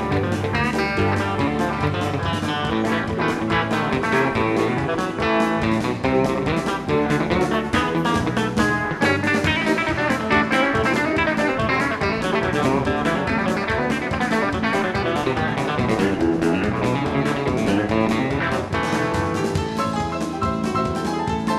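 Live band playing an instrumental number, with plucked guitar lines over an electric bass.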